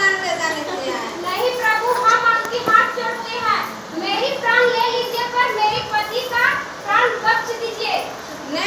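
A high-pitched voice speaking in long, drawn-out phrases that the words can't be made out of.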